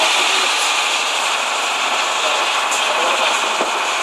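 Small motorboat underway: a steady rushing noise of engine, wind and water wash blended together, with no clear engine note standing out.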